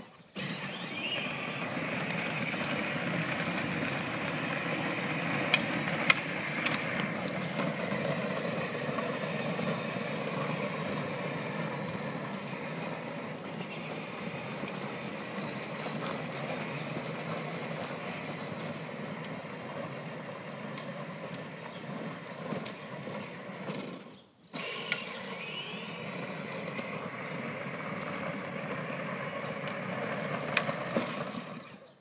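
Battery-powered ride-on toy car driving on asphalt: its small electric motor running and hard plastic wheels rolling, a steady drone that cuts out briefly about 24 seconds in. A couple of sharp clicks come about five to six seconds in.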